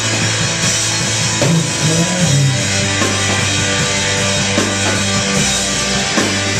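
Live rock band playing an instrumental passage, with a drum kit and cymbals under sustained low notes.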